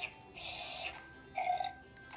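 Baby Alive Baby Grows Up doll's electronic eating sounds from its built-in speaker as the toy yogurt cup is held to its mouth: a short hiss about half a second in, then a louder, short sound about a second and a half in.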